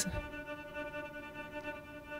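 Native Instruments Straylight granular sampler sustaining a held pitched drone made from a recorded violin tremolo on an open A, sounding choppy with large grains and shifting from side to side with panning jitter.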